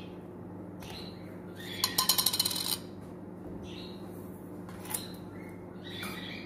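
A steady low electrical hum, broken about two seconds in by a quick rattling run of clicks lasting under a second, with a single sharp click near five seconds and a few faint short mouth-like noises.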